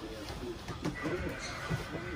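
Faint, muffled voices, with a thin steady high tone coming in about halfway.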